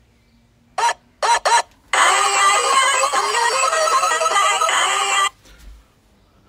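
A mobile phone going off loudly with music for about three seconds, then cut off suddenly. Three brief sounds come just before it.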